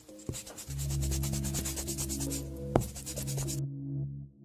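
Brush-stroke sound effect, a rapid run of scratchy strokes that stops shortly before the end, over background music with sustained low notes. A single sharp click falls about three-quarters of the way through.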